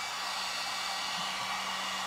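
Electric heat gun blowing steadily, an even rush of air over a faint constant motor hum, drying fresh acrylic paint on a painted pumpkin cutout.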